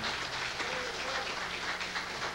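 Audience applauding in a room after a band finishes a tune.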